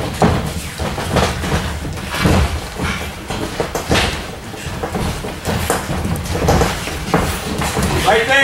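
Gloved punches landing in a sparring exchange: a series of irregularly spaced thuds from boxing gloves striking gloves and headgear.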